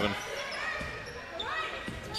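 Basketball being dribbled on a hardwood court, with a few short high squeaks of sneakers on the floor.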